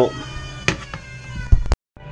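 A child crying in the background, with a couple of sharp knocks, and the sound cutting out abruptly near the end.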